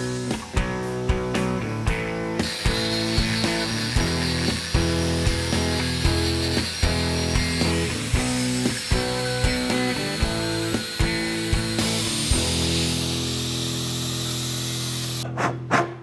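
Angle grinder with a cut-off disc cutting notches into square steel tube: a steady, high hiss of the disc in the metal, starting a couple of seconds in and stopping just before the end. Background music with a steady beat runs throughout and is about as loud.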